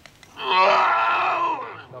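A man's loud, drawn-out cry of pain, lasting just over a second and tailing off at the end, as a doctor treats his gunshot wound.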